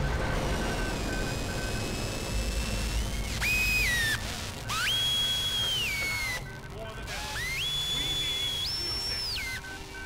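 Part of an experimental sound collage: three high, whistle-like tones, each held for a second or two and sliding or stepping in pitch, the last jumping up higher before it ends. Under them runs a hiss with a faint, quick repeating beep.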